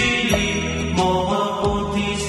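Intro music of a Buddhist mantra chant: a sung mantra over instrumental backing.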